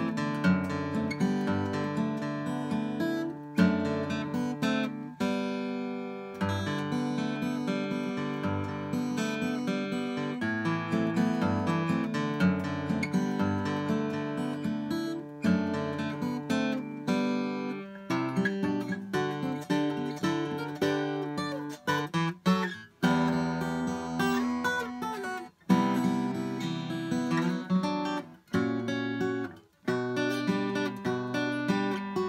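Solo steel-string acoustic guitar played fingerstyle: a picked melody over ringing bass notes, with a few brief breaks between phrases in the second half.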